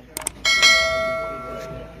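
Subscribe-button sound effect: two quick mouse clicks, then a bright notification-bell chime that rings on several steady pitches and fades away.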